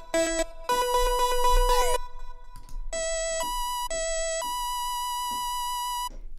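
VPS Avenger software synthesizer playing its Crystal Lead preset, notes played on a keyboard: several overlapping notes for the first two seconds, then after a short gap four notes in a row, the last one held to the end.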